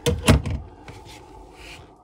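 A wooden cabinet door being pulled open, with a quick double clack near the start, then quiet handling noise.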